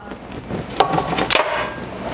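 Kitchen handling noise on a cutting board: two sharp knocks about half a second apart, near the middle, over light rustling as utensils are moved about.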